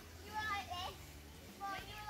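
A child's high voice calling out while playing, in two short calls, one near the start and one near the end, over a low steady rumble.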